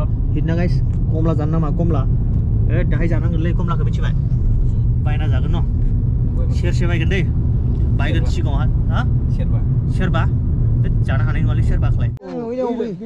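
Steady low rumble of a moving vehicle heard from inside, with people talking over it.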